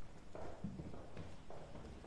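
Footsteps and knocks of several people moving about on a hard floor: a few irregular, dull thuds.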